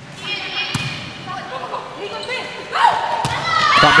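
Volleyball rally in a large hall: thuds of the ball being passed and hit, with players' voices calling out, getting louder in the second half.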